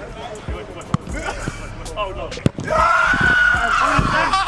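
Football struck by a player's foot on an artificial-turf pitch: a few sharp thuds, the loudest about two and a half seconds in. A long raised voice follows near the end.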